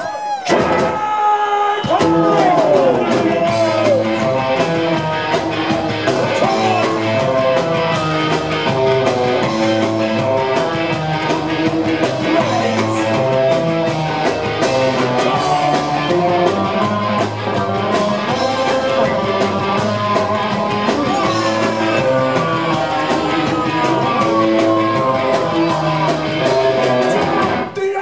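Live band playing an up-tempo ska number on electric guitars, upright double bass and drums, with a steady, even beat. The bass and drums thin out briefly in the first couple of seconds before the full band comes back in.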